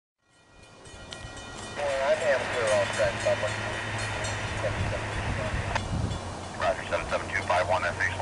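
Railroad radio transmissions heard over a scanner's speaker: a voice comes and goes, with a sharp click partway through. A steady low hum runs underneath, and the sound fades in at the start.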